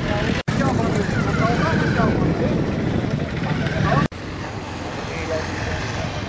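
Several men's voices talking over one another indistinctly, over street and vehicle noise. The sound drops out abruptly twice, about half a second in and about four seconds in, and is a little quieter after the second break.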